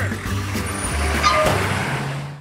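Cartoon taxi engine sound effect as the cab speeds off, over background music, with a sharp knock about a second and a half in as the taxi-stop sign is knocked flat.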